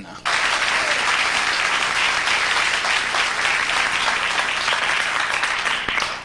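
Studio audience applauding. The applause breaks out just after an on-stage introduction and keeps up at a steady level until it stops about six seconds in.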